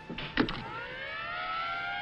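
Fire truck siren winding up, rising in pitch and then holding a steady wail, after a couple of short knocks near the start.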